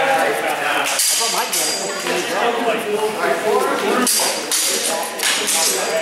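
Indistinct voices echoing in a large hall, cut by a few sharp clashes of sparring blades, the clearest about a second in and again around four to five seconds in.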